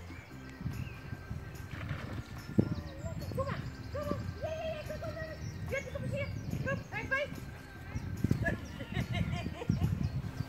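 Irregular thuds of footsteps on grass and camera handling as the camera-holder walks, with faint, indistinct voices in the background.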